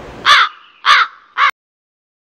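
A crow cawing three times in quick succession, the third call shorter. The sound cuts off dead just after the third caw.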